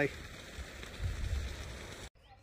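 Outdoor background noise: a steady hiss with a low rumble that swells about a second in.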